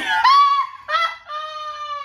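A woman's high-pitched squeal of joy: two long, held cries, the second slightly lower, with laughter in them.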